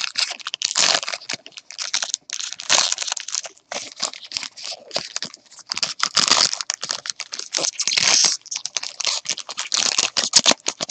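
Trading-card pack wrappers crinkling and cards rustling as gloved hands open packs and handle the cards, a rapid run of short crackles.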